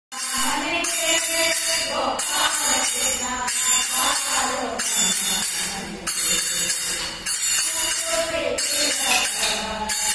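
Kolata stick dance: wooden sticks clacking together on a steady beat, with a group of women singing a song over it.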